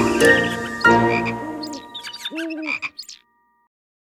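The last notes of a children's song fade out, followed by a short cartoon frog croak sound effect in two pitched calls.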